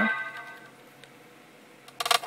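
Dell Streak phone speaker playing its volume-change feedback chime while the volume slider is moved: a short tone of a few clear pitches fades out over about half a second. A louder chime starts right at the end.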